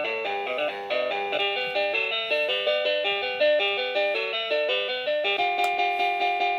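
LeapFrog Alphabet Pal caterpillar toy playing an electronic children's tune through its small speaker: a quick stepping melody, a little high-pitched on full batteries. About five seconds in there is a click and the tune changes to longer held notes.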